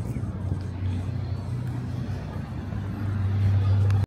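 Road traffic: a motor vehicle's engine running nearby, a steady low hum that grows louder near the end and then stops abruptly.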